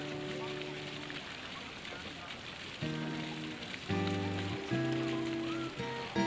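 Acoustic guitar chords played and left ringing, with a pause of about two seconds before new chords come in near the three-second mark and change twice more.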